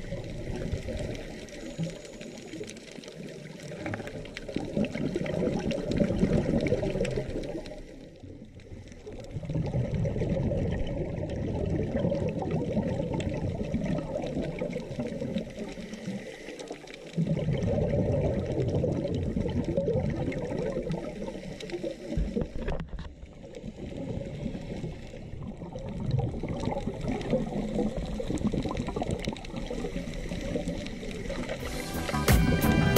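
Underwater sound picked up by a diver's camera: water bubbling and gurgling, typical of a scuba diver's exhaled bubbles. It swells into louder stretches lasting several seconds, with brief quieter breaks between them.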